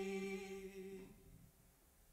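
Worship singing holding one long note at the end of a phrase, which fades out about a second in and leaves near silence.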